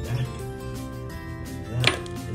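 Background music, with one short, loud, sharp sound near the end.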